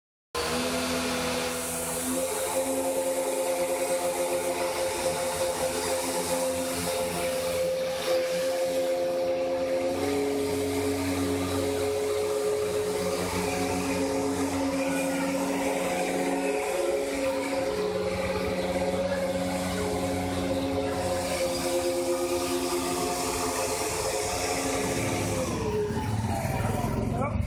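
Small electric motors and propeller of a homemade RC hovercraft running with a steady whine. The pitch shifts a couple of times and slides down near the end as the motors slow.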